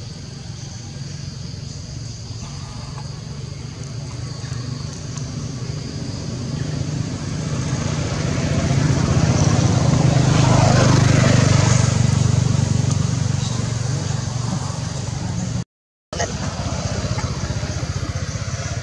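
A motor vehicle passing by: a low engine hum that grows louder to a peak about ten seconds in, then fades away.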